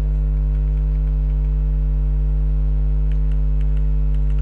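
Steady electrical mains hum: a low drone with a ladder of higher tones above it, unchanging throughout, with a few faint ticks a little after the middle.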